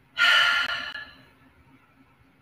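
A woman's loud, breathy sighing exhale. It starts sharply and trails away over about a second.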